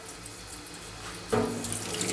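Water running from a kitchen tap and splashing over a plastic canteen cap as it is rinsed under the stream.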